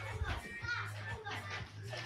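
Several young children's voices calling out in a classroom during a fast card-passing game, repeating a shape's name as the card goes down each row, over a steady low hum.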